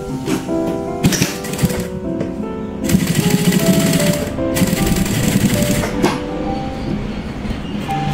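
JUKI 9800-D3 industrial sewing machine stitching through quilted cotton, with rapid needle strokes: a short run about a second in, then a longer run from about three to six seconds in. Background music plays throughout.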